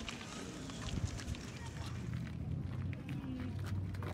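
Outdoor crowd ambience: faint voices of onlookers murmuring, with scattered light clicks and scuffs.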